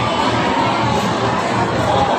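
Crowded restaurant din: many voices talking at once in a steady babble, children's voices among them.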